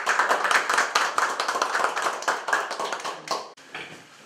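A small group of people clapping, a dense run of quick claps that dies away about three and a half seconds in.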